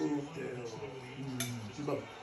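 Cutlery clinking on a plate while a small child is fed by hand, with one sharp clink about one and a half seconds in and a lighter one near the end.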